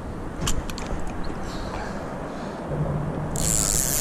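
Spinning reel being cranked to bring a hooked catfish up from deep water: a few sharp clicks in the first second or so, then a steady whir from the reel from about three seconds in. A loud hiss starts near the end.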